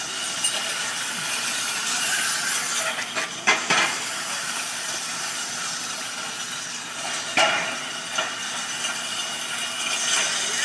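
Metal push sleds scraping across asphalt: a steady, gritty hiss, with a few sharp knocks about three and a half seconds in and again near seven and a half seconds.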